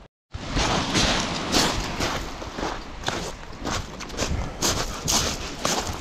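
Footsteps crunching on a beach at a walking pace, about two steps a second, after a short silent gap at the start.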